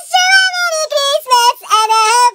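A high-pitched, child-like singing voice sings a quick run of short held notes that step up and down in pitch.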